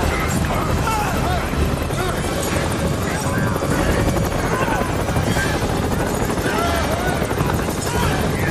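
Helicopter hovering close by, a steady loud rotor and engine roar, with people shouting over it.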